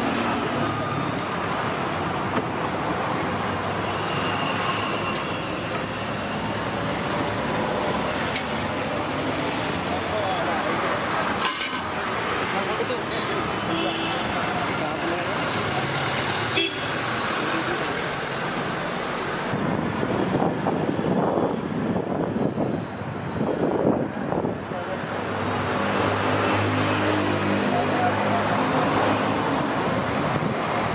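Busy street ambience: road traffic and passing vehicles with a horn toot, under the chatter of people's voices.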